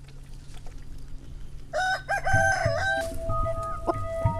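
A rooster crows once, a single wavering call of about a second starting just before the middle. Music with long held notes comes in over it and continues to the end.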